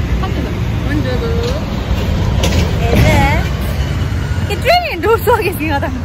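Low, steady engine rumble of a bus and street traffic, with people talking over it.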